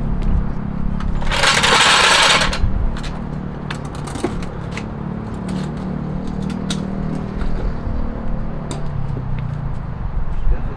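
Workshop noise of a transmission job: scattered metal clicks and knocks of tools and parts being handled over a steady low drone, with one loud hissing burst lasting about a second, starting about a second and a half in.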